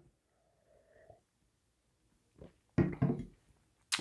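A man quietly sipping beer from a glass, then a brief sound from his voice about three seconds in, as he tastes it.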